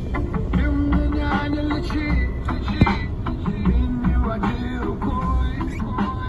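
Rap music with a steady, heavy bass beat.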